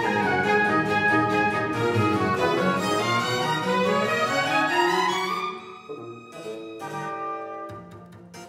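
Baroque orchestra of bowed strings playing a movement of a modern double bass concerto. A loud, dense passage with a line rising steadily in pitch thins out about five and a half seconds in to quieter, separately sounded notes.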